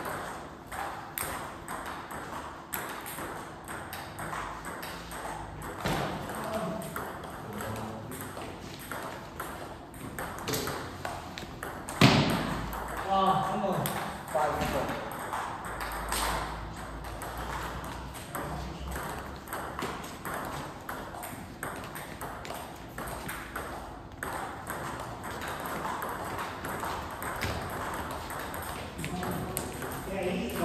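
Table tennis rallies: the ball clicking in quick repeated strikes off bats and table, the pace rising and falling from rally to rally. A single sharp knock about twelve seconds in is the loudest sound.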